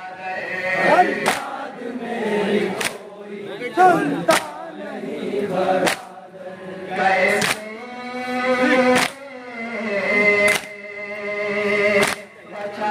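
Men chanting a Shia nauha lament in chorus, while the crowd beats their chests in unison (matam). The sharp, sudden strikes come about once every second and a half, between the sung lines.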